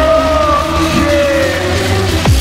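UK hardcore dance music playing loud, with a heavy steady bass. A long held tone on top slides down in pitch about a second in.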